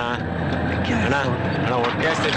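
Voices speaking over the steady low drone of a vehicle, heard from inside the cabin.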